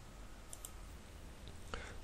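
Quiet room tone with a few faint computer mouse clicks about half a second in.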